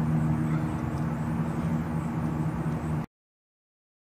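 A steady low mechanical hum, like a motor running, that cuts off suddenly about three seconds in.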